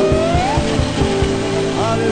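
Loud live praise-band music: a fast drum beat of about four thumps a second under a held keyboard note, with gliding high notes rising and falling over it. The drum beat thins out about halfway through.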